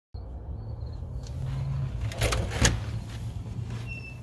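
A steady low rumble with a few sharp knocks and clicks a little past halfway, the loudest about two and a half seconds in.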